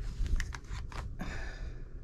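Quilting cotton fabric being handled and shuffled, rustling with several short crinkles and clicks.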